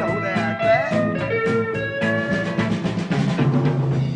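Rock band playing live in a rehearsal room: electric guitar with bending notes over bass and a drum kit, in an instrumental gap between sung lines.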